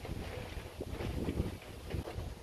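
Wind rumbling on the microphone, with a few faint metal clicks and knocks from the bike carrier's clamp being worked onto the car's tow-hitch ball.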